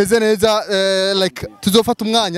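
A man speaking, in short phrases with brief pauses.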